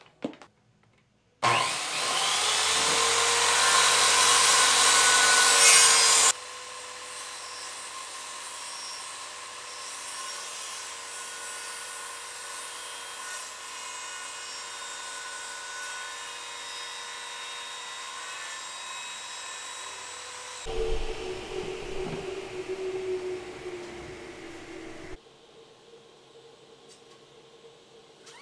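HiKOKI electric circular saw starting up with a rising whine about a second in, then running loud and steady for about five seconds. It drops abruptly to a much quieter steady whine, and near the end a rougher, lower, uneven stretch of a few seconds sounds as the blade works through the plywood.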